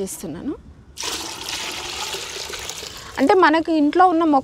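Water poured from a plastic tub into a bucket of beetroot liquid, diluting the fertilizer. A steady rushing splash starts about a second in and lasts about two seconds.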